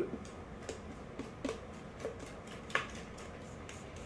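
Spatula scraping a metal mixing bowl as thick cheesecake batter is poured into a springform pan: faint, irregular light clicks and ticks, a few of them louder.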